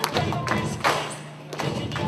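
A person dropping onto a wooden stage floor, one loud thump a little under a second in, over recorded music with singing.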